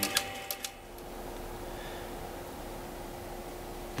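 Coil-winding rig on a small lathe clicking quickly as wire is wound onto the bobbin; the clicking stops under a second in. A steady low hum follows.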